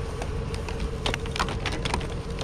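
Several light knocks and clatters about one to two seconds in as a broken pedestal fan is set down among scrap metal in a pickup bed, over a steady low rumble from the idling pickup truck.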